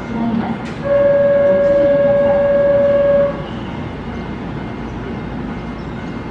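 Keihan 8000-series train's horn sounding one steady tone for about two and a half seconds, starting about a second in, as the train signals its departure from the platform. A short click comes just before it.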